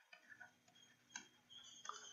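Near silence with a few faint ticks of a stylus touching a tablet screen while writing.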